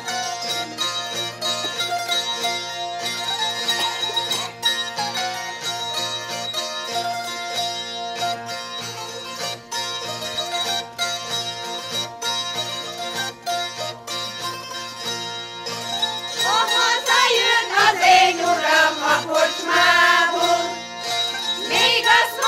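Hungarian citera (folk zither) played by two players, a plucked folk tune in a steady rhythm. About three-quarters of the way through, a choir joins in singing over it.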